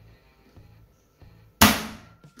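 Magnetic contactors of a star-delta starter dropping out with one sharp clack about one and a half seconds in, as the thermal overload relay is tripped by hand: the whole control circuit cuts off.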